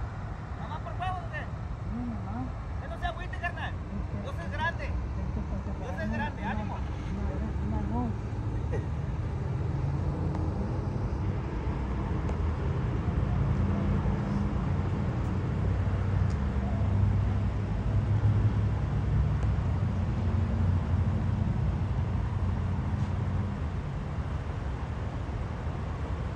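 Low, steady rumble of a motor vehicle engine running close by, growing louder through the second half. Faint voices in the first part.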